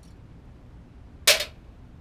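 A small drinking glass set down on a tray with a single sharp clink, about a second and a half in, with a short ring after it.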